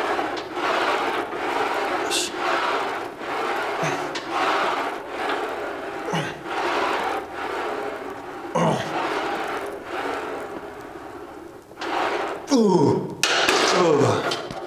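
Background music with a steady pulse about once a second. Near the end it is topped by loud, short, falling grunts from a man straining through the last reps of a heavy barbell overhead press.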